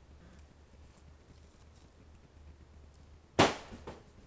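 A single sharp knock about three and a half seconds in, much the loudest thing heard, fading quickly, with a smaller knock just after it, over a faint low background.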